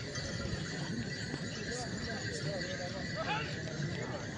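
A line of tbourida horses moving at a walk, their hooves clip-clopping on sand, with a horse neighing about three seconds in, over the chatter of the crowd.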